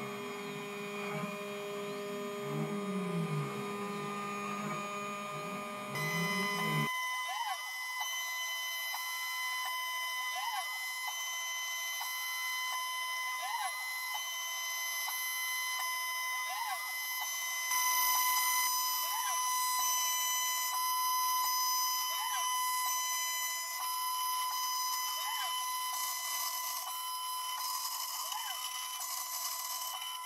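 CNC milling machine spindle running with an end mill cutting profiles out of a metal sheet: a steady high-pitched whine made of several tones. Over it a pattern of rising and falling sweeps repeats about every second and a half.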